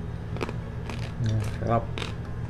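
Crispy roast pork belly skin (lechon) crackling and crunching as it is bitten and chewed, a few sharp cracks, with a short spoken word near the end.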